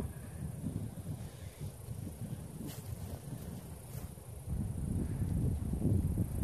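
Low, uneven rumble of wind buffeting the microphone, growing louder near the end, with a couple of faint ticks.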